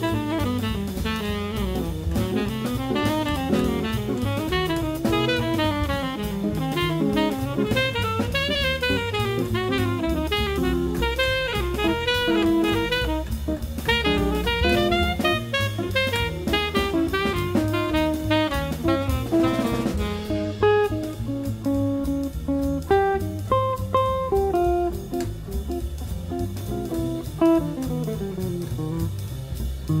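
Small jazz group playing cool-jazz bebop: a saxophone runs fast, winding lines over drum kit, bass and guitar. About twenty seconds in, the sound changes abruptly to sparser, separate phrases over the rhythm section.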